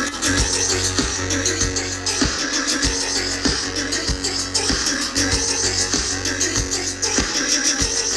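Live electronic dance band on an outdoor stage, heard from within the crowd: synthesizers and keyboards over a steady kick-drum beat about two a second.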